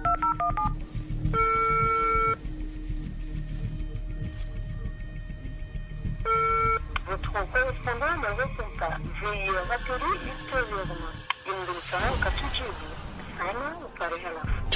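Telephone call being placed: a quick run of keypad dialing tones, then ringback tone pulses about a second long and four seconds apart, ringing unanswered. Later a few seconds of quick chirping, warbling sounds follow, over a low steady hum.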